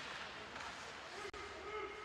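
Faint ice hockey rink ambience during play along the boards: distant voices of players and spectators over a steady hiss, the voices a little clearer from about halfway through.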